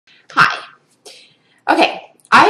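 A woman's short, sharp, breathy vocal burst about half a second in, followed near the end by a brief voiced sound.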